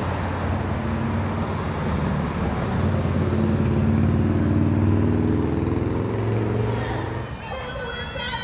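Road traffic passing close by, with a car's engine note rising as it goes past. It is loudest about halfway through and dies away shortly before the end.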